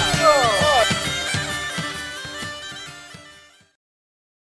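Bagpipes playing a tune over their steady drone, fading out about three and a half seconds in.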